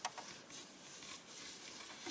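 Faint handling noise of fingers rustling an action figure's cloth cloak, with a few soft ticks in the first half-second.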